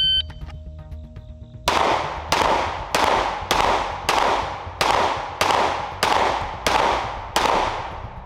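A shot timer beeps once. About a second and a half later a semi-automatic pistol fires a timed string of ten shots at an even pace, roughly two-thirds of a second apart, each crack trailing off in an echo; the last shot comes about 7.5 seconds after the beep.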